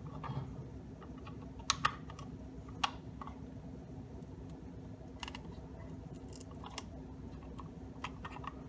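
Light, scattered clicks and taps of 3D-printed PLA plastic parts being handled and pressed into place on a puzzle box: a quick pair of sharp clicks about two seconds in, another near three seconds, and a few more after five seconds.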